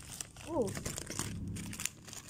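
White paper blind-bag wrapper crinkling and crumpling as it is handled and pulled open by hand.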